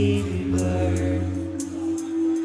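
Live electronic music: held, chant-like chord tones over a steady low bass drone, with a few sparse high ticks. The low bass drops away near the end, leaving a single held tone.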